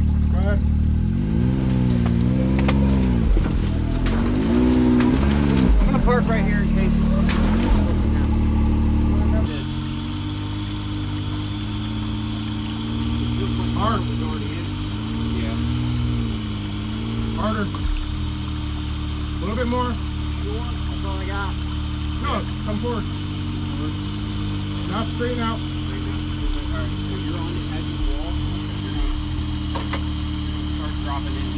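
Can-Am side-by-side engine revving up and down in short throttle pulses as it crawls over rock drops. About nine and a half seconds in the sound cuts to a quieter, more distant side-by-side engine under a steady hum, with brief throttle blips.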